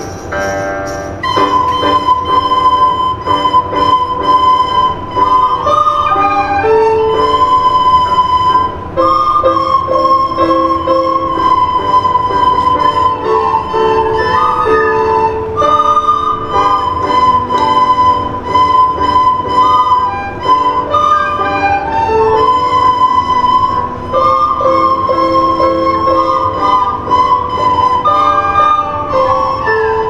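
A group of children playing soprano recorders together, a simple tune in short phrases, with lower notes sounding underneath.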